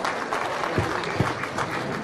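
An audience applauding, a steady patter of many hands clapping, with two soft low thumps a little before and after the middle.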